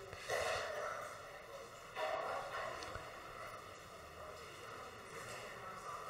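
Faint murmur and movement of people in a large hall.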